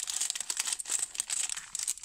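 Thin clear plastic packet crinkling as it is handled, a dense run of quick, irregular crackles.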